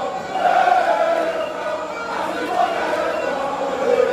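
A large crowd of football supporters singing a chant together, many voices blending into one wavering tune.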